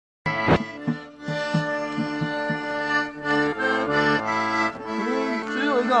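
Accordion playing a Georgian folk tune in steady held chords, with a doli drum beating about four strokes a second. A man's voice comes in near the end.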